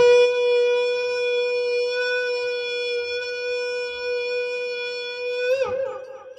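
Conch shell (shankh) blown in one long, steady note of almost six seconds, sounded to open the aarti. Its pitch wavers and drops as the breath runs out near the end.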